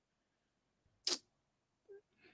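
Near silence broken by a single short, sharp click about a second in.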